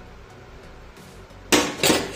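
Faint background music, then near the end two loud clanks of a steel spoon knocking against the metal cooking pot as stirring starts.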